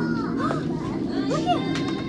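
Children's voices, with short exclamations and chatter, over background music.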